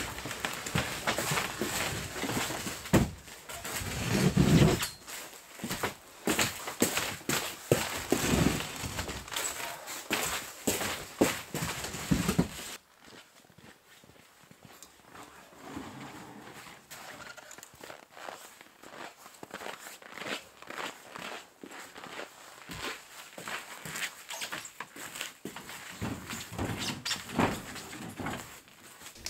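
Footsteps and scattered knocks and thuds of someone moving about and handling things on a plywood floor. The sound drops suddenly about halfway through to fainter, more distant knocks and clicks.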